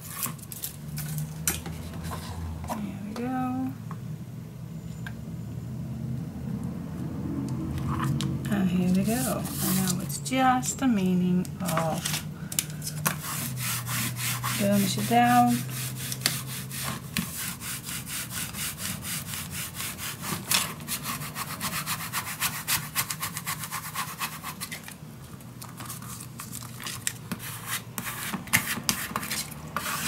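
Fast back-and-forth rubbing of a folded pad over cardstock, smoothing freshly glued paper down onto a chipboard album cover. The strokes come quick and even through about the second half, after softer handling sounds of tape and paper.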